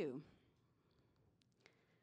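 A woman's spoken sentence ends, followed by near silence with two faint, short clicks a quarter of a second apart about halfway through.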